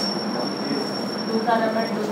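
A steady, high-pitched whine holding one pitch for about two seconds and cutting off at the end, over a low steady hum.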